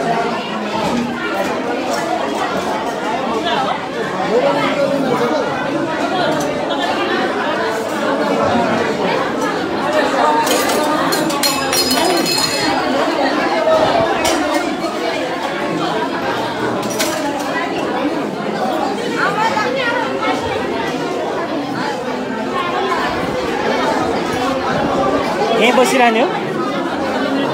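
Many people talking at once in a large room, with metal clinking of steel plates and cups against each other, strongest about halfway through.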